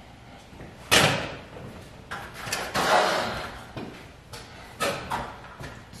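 Knocks and clatter from handling objects off-camera: one sharp, loud knock about a second in, a longer clattering rustle a second later, then a few lighter knocks.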